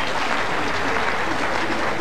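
Audience applauding steadily, a round of clapping for a well-played bowl.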